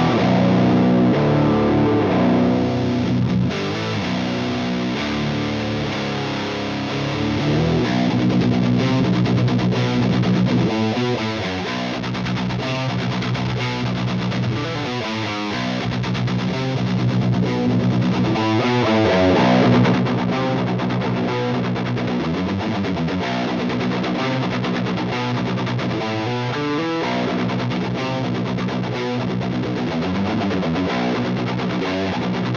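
Seven-string electric guitar played through a Void Manufacturing Bonk (Turbo Caveman) preamp distortion pedal into a power-amp sound: heavily distorted notes ringing out. Several times the tone sweeps up and down as the pedal's knobs are turned.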